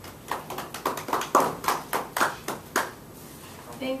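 A small audience clapping briefly: a couple of seconds of distinct, uneven claps that die away, followed by a woman starting to speak.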